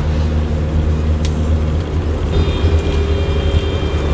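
Steady low engine and road rumble heard from inside the cabin of a taxi van on the move, with a faint steady hum over it.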